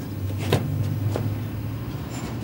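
A low, steady motor hum with two short clicks, one about half a second in and one just after a second.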